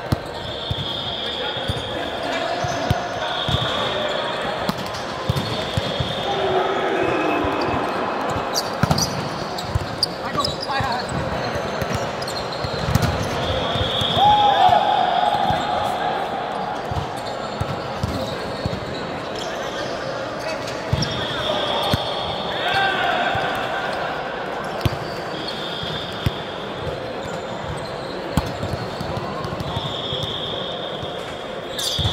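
Indoor volleyball court ambience in a large echoing hall: players' voices and calls, with repeated ball bounces and knocks on the hard court floor. A high, thin tone comes and goes many times throughout.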